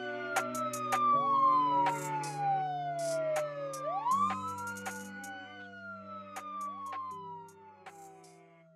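A wailing siren that sweeps up quickly and falls slowly, repeating about every two seconds, over held musical chords and a few sharp clicks. Everything fades out steadily toward the end of the song.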